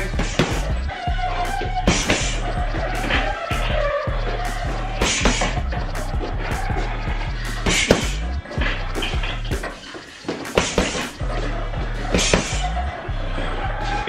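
Gloved punches landing on an uppercut-style heavy bag, a knock every second or two, over background music with a steady bass.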